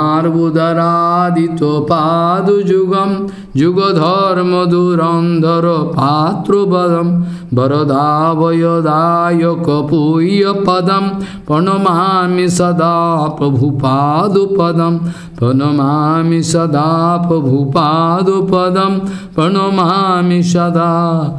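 A chant of Vaishnava Sanskrit prayers, sung in a wavering, melodic voice over a steady low drone. It goes in phrases of about four seconds, each followed by a brief pause.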